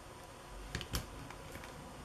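A few small clicks of steel round-nose jewelry pliers against a wire head pin, about a second in, as a small loop is bent in the pin.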